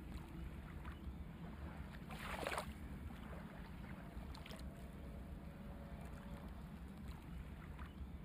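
Faint steady low background noise, with a soft brief swish about two seconds in and a fainter one about four and a half seconds in.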